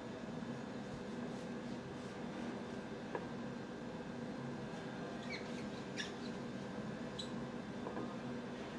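Imarku 8-inch chef's knife blade squeaking faintly as it is pressed slowly into a shallot, a few short squeaks in the second half, over a steady background hum. The blade is struggling to get into the shallot.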